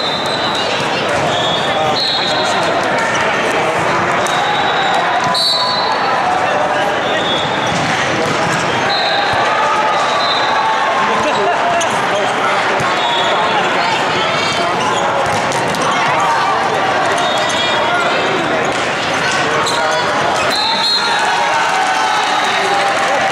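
Busy sports-hall din around volleyball games: steady chatter of players and spectators, volleyballs being hit and bouncing, and short high referee whistle blasts sounding every few seconds from the surrounding courts, all echoing in the big hall.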